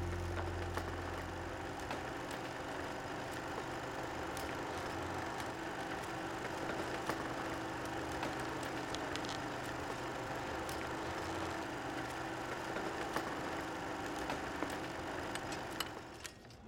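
Reel-to-reel film projector running: a steady mechanical whir with a faint hum and scattered small clicks.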